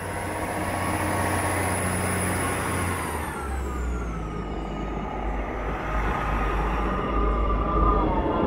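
A three-coach British Rail Class 158 diesel multiple unit passing close by: a steady rush of wheel and engine noise. A high whine falls in pitch about three seconds in, and a deeper rumble builds through the second half.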